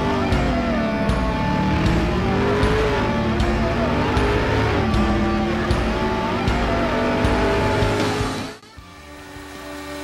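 Intro music with a beat, mixed with a car engine revving up and down. It drops away sharply about eight and a half seconds in.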